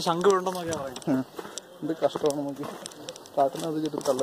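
Speech: a man talking in short phrases with brief pauses between them.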